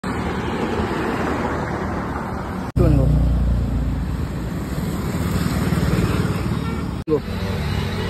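Road traffic noise from cars passing on a city street, a dense steady rumble. It is broken by two sudden cut-outs, about three and seven seconds in, each followed by a short falling tone.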